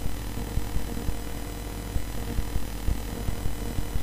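A steady low hum runs under the recording, with faint, irregular clicks scattered through it.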